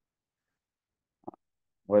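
Near silence, broken by one very brief faint soft sound a little past halfway. A man's voice starts at the very end.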